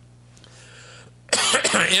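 Quiet room tone for just over a second, then a man's cough that leads straight into his speech.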